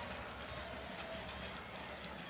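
Faint, steady outdoor ambience of a football match: a low, even wash of distant stadium noise with no clear single event.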